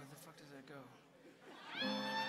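A short, high-pitched voice call that bends and falls in pitch, like a shout from the crowd at a live show. About a second and a half later, a held chord from the band's instruments starts up and rings on.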